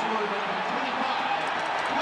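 Hockey arena crowd noise: a steady din of many voices from the stands, with faint speech within it.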